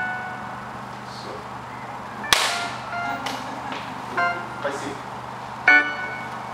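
Sparse single notes on a Yamaha electronic keyboard, short and separated by pauses. A single sharp crack, like a clap or knock, comes about two seconds in and is the loudest sound.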